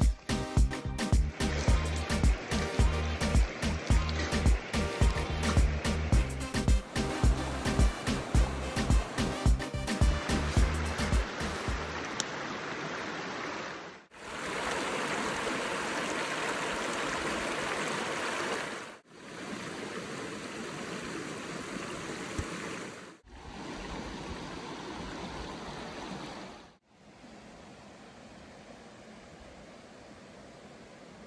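Background music with a steady beat that fades out about twelve seconds in, followed by a river running over stones, heard in several short clips with abrupt cuts between them and fainter in the last few seconds.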